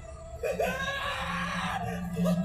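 A single drawn-out scream of about a second and a half, a held cry with a short rising start, coming from the anime episode's soundtrack at low level under a steady low hum.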